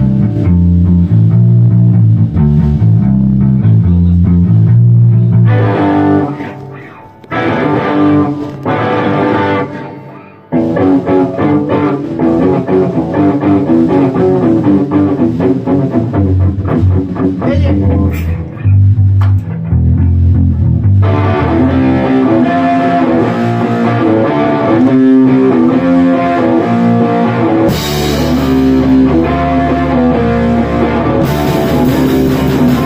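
A live rock band rehearsing with electric guitar and bass guitar playing riffs, briefly dropping out twice in the first third. Drums and cymbals come in loudly a couple of seconds before the end.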